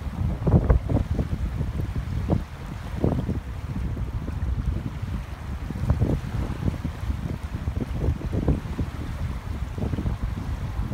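Wind buffeting the microphone: a steady low rumble with irregular gusts, over small waves lapping at the shore.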